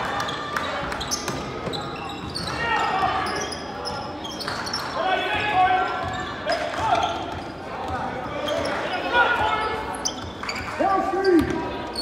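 Echoing gymnasium sound of a basketball game: a basketball bouncing on the hardwood court in scattered thuds, mixed with distant shouts and voices of players and spectators carrying in the large hall.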